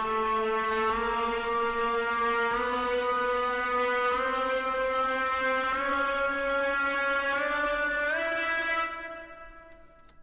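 Trailer-score synth lead holding a sustained note that climbs step by step, about every second and a half, rising through D minor and then chromatically, before fading out near the end.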